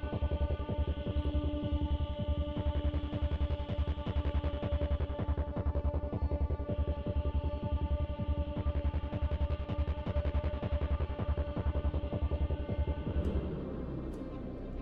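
Film-score music: a fast, even pulse in the bass under held tones that change a few times, dropping away near the end.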